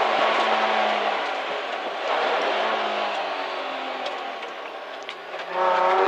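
Rally car's engine and tyre/road noise heard from inside the cabin, the engine note wavering as the car works through a chicane and the overall sound gradually getting quieter. A voice starts again just at the end.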